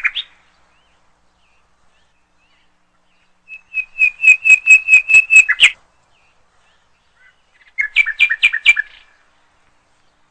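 A bird calling in quick series of sharp, repeated chirps: a run of about a dozen notes lasting two seconds, then a shorter run of lower, two-pitched chirps a few seconds later.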